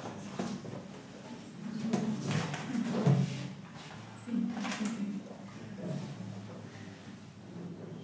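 Handling noises: a few irregular soft knocks and rustles as string players bring their violins into playing position, loudest about two to three seconds in and again near five seconds.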